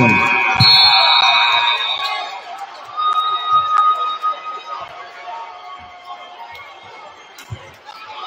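Basketball gym's end-of-half horn, a steady tone held for the first two seconds over crowd noise. The crowd chatter then dies down as the half ends.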